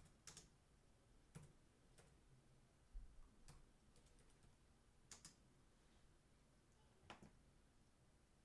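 Near silence broken by a few faint, irregularly spaced computer clicks, about seven in all, with a soft low thump about three seconds in.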